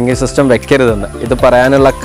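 A man's voice talking steadily in Malayalam; only speech is heard.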